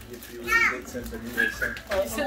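Excited voices in a small room, including a child's high voice about half a second in; no other sound stands out.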